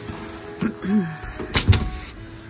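A short cluster of sharp knocks and clatter about three quarters of the way through, at a plywood coop door with a metal barrel bolt, over soft background music; brief pitched sounds come in the middle.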